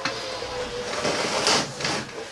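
Hand handling a plastic bag of leatherwork snap setters on a workbench: a crinkling rustle, loudest about one and a half seconds in.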